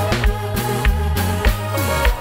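Live konpa band playing with electric bass, keyboards and drums: a steady beat under a bass line with sliding notes, no vocals.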